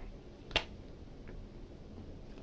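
A person chewing with the mouth closed, faint, with one sharp click or crunch about half a second in.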